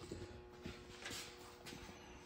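Faint, scattered knocks and handling noise from objects being picked up and moved on a table, over a faint steady hum.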